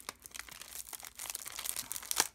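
Clear plastic packaging of a clear stamp set crinkling and crackling in irregular bursts as it is flexed and handled.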